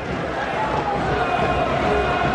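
Football stadium crowd noise after a goal, a dense wash of many voices with a faint held tone in it, slowly growing louder.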